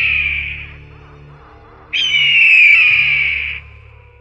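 A long, high screeching cry that falls slightly in pitch is heard twice, the first fading out in the first second and the second starting about two seconds in, over a low, steady background music bed.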